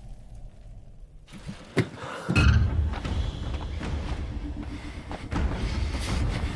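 Film battle sound effects: a sharp thud about two seconds in, followed by a heavy, sustained low rumble with scattered knocks.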